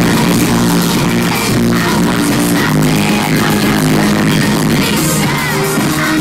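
Loud electronic pop music played live through a concert PA, with a synth line repeating in a steady pattern.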